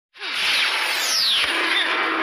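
Sound effects for an animated transition: a dense rushing whoosh that comes in suddenly, with a falling zing about a second in.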